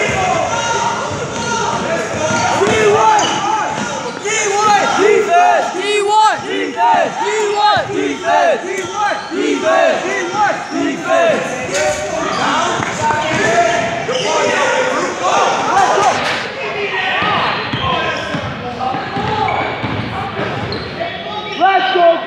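Basketball game on a hardwood gym floor: many short sneaker squeaks as players cut and stop, the ball bouncing, and spectators' voices ringing in the large hall.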